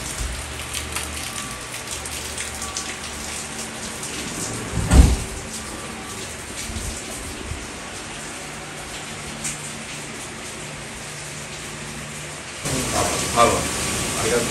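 Steady rain heard through open windows, an even hiss with faint scattered drops. There is a single heavy thump about five seconds in.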